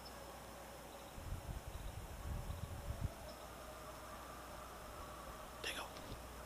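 Faint outdoor ambience with a steady low hum, broken by irregular rumbles of wind on the microphone about a second in that last until about three seconds in, and a brief high chirp near the end.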